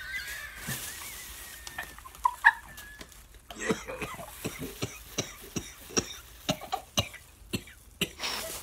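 People coughing and gagging after chewing a spoiled-milk-flavoured BeanBoozled jelly bean. A thin, wavering high whine runs for the first three seconds, then comes a run of short sharp clicks and crackles as bags are held to the mouth.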